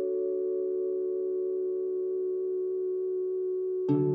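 Background music: a soft chord of several sustained tones held steady, with plucked-string music coming in near the end.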